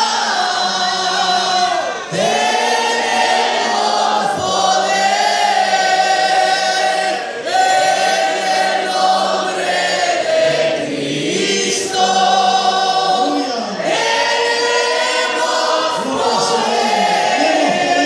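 A large group of voices, men and women together, singing a hymn, with long held notes in phrases of about two seconds.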